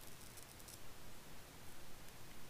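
Quiet room tone with a low hum, and a few faint, short clicks in the first second.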